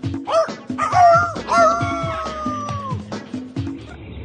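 A cartoon rooster crowing over theme music with a steady beat: a few short rising cries, then one long drawn-out note that sags slightly at the end.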